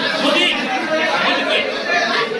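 Several men talking at once close by: overlapping voices, a steady mix of conversation with no single clear speaker.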